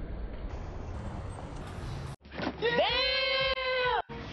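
Street background noise, then a sudden cut about two seconds in to an edited-in sound effect: one loud, drawn-out pitched cry that rises, holds steady and is cut off sharply.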